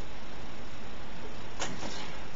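Steady hiss of recording noise, with a short rush of noise near the end.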